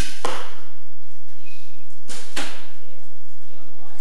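Arrows being shot from bows: sharp snaps in quick pairs, two at the start and two more about two seconds in, each ringing briefly in a reverberant hall.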